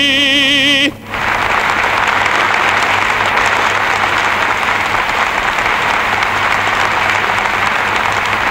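A male operatic baritone holds the song's final note with a wide vibrato and cuts it off about a second in. A large audience then breaks into steady applause.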